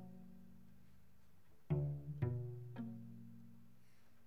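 A cello played pizzicato, quietly: a low note rings out and fades, then about halfway through a group of three plucked notes about half a second apart, each left to ring and die away.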